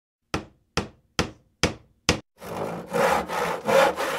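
Five sharp knocks on wood, evenly spaced a little over two a second, then about two seconds of rough rasping strokes like a saw cutting wood.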